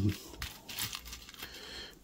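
Small electronic components (capacitors, transistors and their wire leads) clicking and rustling lightly as fingers pick through the loose pile, with faint crinkling, a few separate small ticks.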